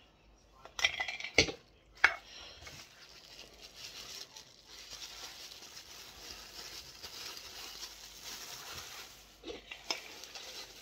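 A few sharp knocks and clinks in the first two seconds as a metal Funko Soda can is handled. Then steady crinkling of bubble wrap being pulled off the vinyl figure inside.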